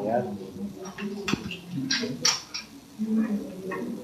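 A few sharp metal clicks as a lanyard's snap hook is clipped onto the back D-ring of a full-body safety harness, with a man's voice talking over them.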